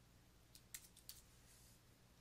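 Near silence with a few faint, short clicks in quick succession from about half a second to just after a second in.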